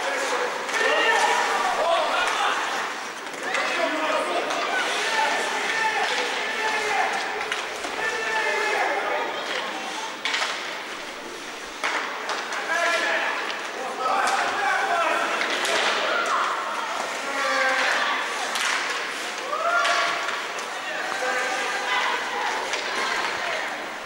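Live ice hockey game sound from the rink: many voices calling and shouting, with scattered sharp knocks and slams of sticks and puck against the boards.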